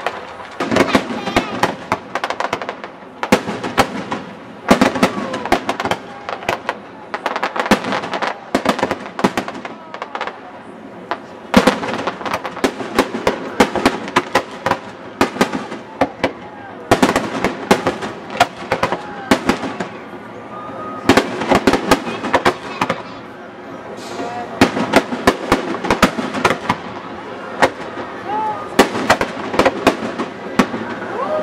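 Aerial fireworks display: shells bursting with sharp bangs and crackling, in dense clusters every few seconds with short lulls between them.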